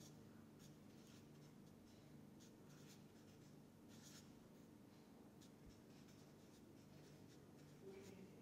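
Faint scratching of a felt-tip marker drawing on paper, in short separate strokes over near-silent room tone.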